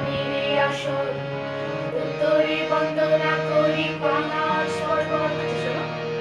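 Harmonium playing a steady reed drone and melody under voices singing a Gajan devotional song in Bengali.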